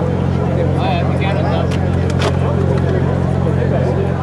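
People talking nearby over a steady, unchanging low hum, with a few faint clicks about one to two seconds in.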